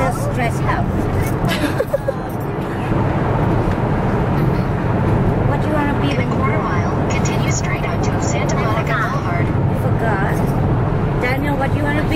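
Steady low rumble of road and engine noise inside a moving car's cabin, with talking over it.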